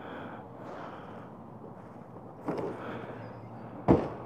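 Faint rustling and handling noise, a bump about two and a half seconds in, then a sharp knock near the end as the RV's entry door is swung toward shut without fully latching.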